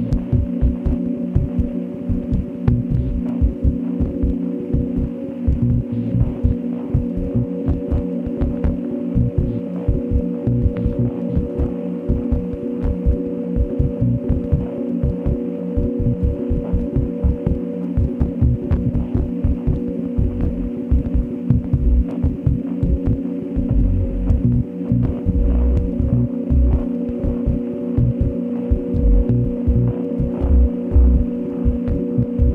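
Glitch-dub ambient electronic music: a steady low drone chord held under a dense, irregular throbbing low pulse, with faint scattered clicks above.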